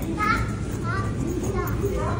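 A young child's voice chattering in short high-pitched phrases over a steady low background hum.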